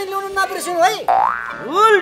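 A man speaks for about a second, then a comic cartoon sound effect: a rising glide followed by a springy boing that rises and falls in pitch, marking a cut to the show's title sting.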